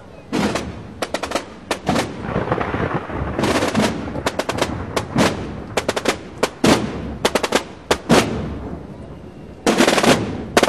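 Holy Week tambores, snare-type drums beaten out of step by many players: sharp, irregular strokes and short rolls in clusters, densest about three and a half seconds in and again near the end.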